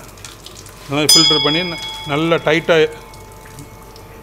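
A thin trickle of whey running from a cloth bag of drained paneer curd into a steel pot, under a man's voice. About a second in, a bright bell chime rings out and fades over about two and a half seconds.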